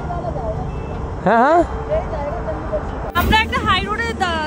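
Steady rumble of highway traffic, with brief bits of people talking over it; about three seconds in the sound changes suddenly and closer talk follows.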